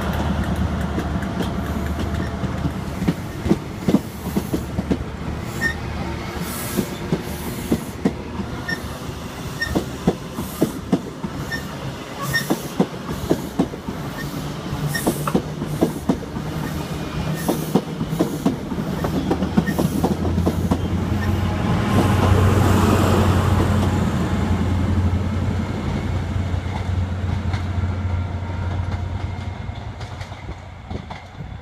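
InterCity 125 (HST) train moving past with a steady rumble and a rhythmic clatter of its Mk3 coach wheels over the rail joints. About twenty seconds in, the rear Class 43 diesel power car goes by and its engine adds a low drone, loudest a couple of seconds later, then fading toward the end.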